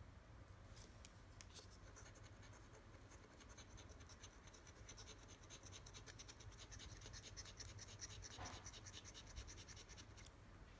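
A coin scratching the coating off a lottery scratch-off ticket: faint, rapid scraping strokes that start about a second in and go on steadily.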